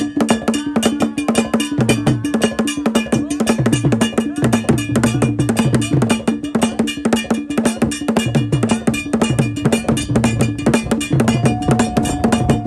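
Traditional drumming: a bell struck in a fast, steady pattern over pitched low drum strokes. A held note joins near the end.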